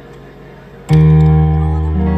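Live band's instrumental intro: soft held keyboard notes, then a loud chord with deep bass comes in about a second in and rings on, changing note near the end.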